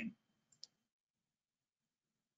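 Near silence, broken by one short, faint click just over half a second in: a computer click advancing a presentation slide.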